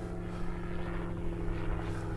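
Distant gyrocopter's engine and propeller making a steady drone.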